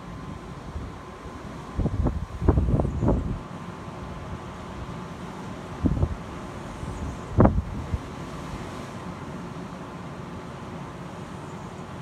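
Wind buffeting the microphone in gusts, a cluster about two seconds in and two shorter ones near six and seven and a half seconds, over a steady outdoor wind noise.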